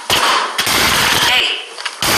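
A sudden crash near the start and another about half a second in as a puppet tumbles down carpeted stairs, with a voice yelling over it.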